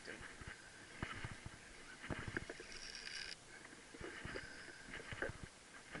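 Quiet sounds of a hooked snook being fought by a wading angler: scattered soft knocks and water movement, with a brief high whir a little past the middle that stops abruptly.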